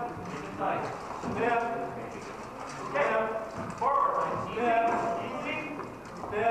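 Men's voices calling out, mixed with hollow wooden knocks of rattan weapons striking shields and armour as armoured fighters close into a practice melee.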